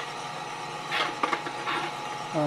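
Gas-fired drum coffee roaster running with a steady hum, and a few short scraping clicks about a second in as the sample trier is drawn out of the drum with roasting beans in it.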